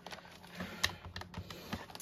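A few faint clicks and taps from a paper trimmer as paper is scored, the scoring head and paper being shifted along the trimmer's track and ruler.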